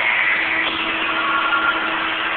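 A small vehicle's engine running steadily, with a steady hum coming in about a third of the way through.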